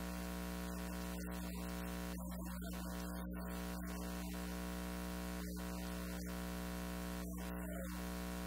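Steady electrical hum and buzz: a stack of unchanging tones over an even hiss, with no speech audible through it.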